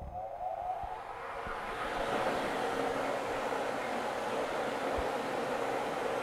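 Lottery draw machine's motor and air blower starting up: a faint rising whine over the first second and a rushing noise that builds for about two seconds, then runs steadily.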